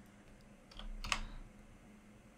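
A few computer keyboard keystrokes about a second in, the last one the loudest.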